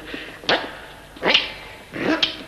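Two short, sharp snaps about a second apart as a wooden conductor's baton is broken in two by hand.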